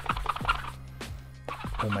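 A hand rubbing water into the new Super Grip latex palm of an Uhlsport goalkeeper glove: a run of short, scratchy rubbing strokes, over steady background music.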